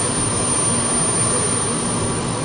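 Jet engine noise from a Tupolev Tu-154 airliner's three rear-mounted engines, heard from the ground as it flies low on approach to land: a steady, even noise with no sudden changes.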